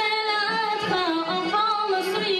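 A woman singing into a microphone, holding long notes that slide from one pitch to the next.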